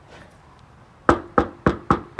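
Knuckles knocking on a panelled door: four quick knocks starting about a second in, roughly three or four a second.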